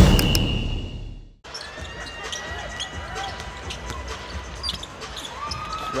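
Drum-heavy music fades and cuts off about a second and a half in. It gives way to basketball game sound: a ball bouncing on the court over an arena crowd, with a commentator's voice coming in near the end.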